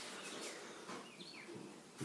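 Quiet room tone with a few faint, short high-pitched chirps between about half a second and a second and a quarter in.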